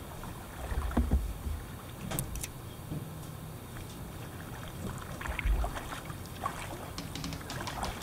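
A kayak on a river, heard from a camera mounted on the boat: water swishing and splashing with the paddle strokes, with low thumps about a second in and again past five seconds.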